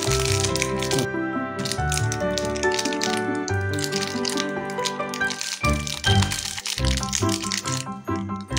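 Background music, loudest throughout, with a plastic candy-bar wrapper crinkling and crackling as hands handle and open it.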